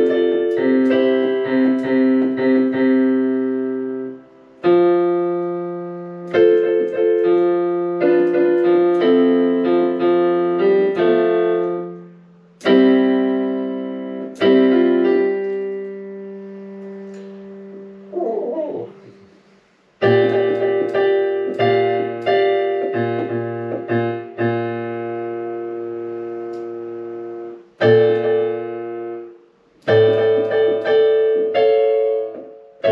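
Digital piano played slowly by a learner: a simple piece of held chords under a melody, in short phrases with brief breaks between them.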